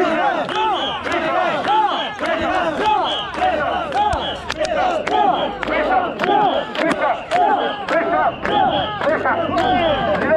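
Crowd of mikoshi bearers shouting a chant together, many men's voices overlapping in a continuous rising-and-falling din, with scattered sharp short hits mixed in.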